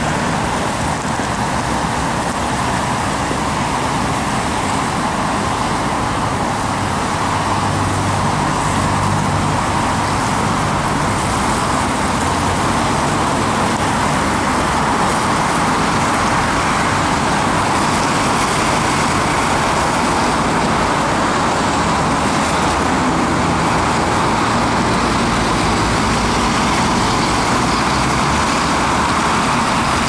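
Steady road traffic noise from cars moving through a city intersection: engine hum and tyre noise on the road surface.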